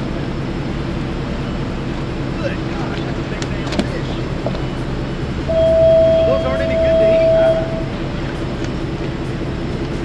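Boat engine idling steadily, a low even hum. Just past the middle a loud, steady high tone sounds for about two seconds.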